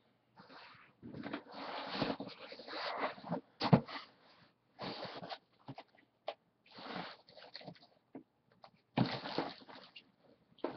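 Cardboard box flaps being pulled open and handled: a run of rustling and scraping, longest in the first few seconds, then in short bursts with pauses between.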